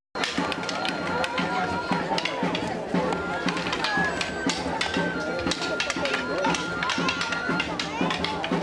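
Festival dance music: a high, steady pipe-like melody held in long notes that step up and down, over the chatter of a crowd and a running patter of sharp clicks and taps. The sound cuts out for a split second at the very start.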